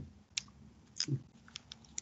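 A quiet pause holding a few faint, short clicks and ticks: one sharp click about a third of a second in, a brief sound about a second in, and several lighter ticks near the end.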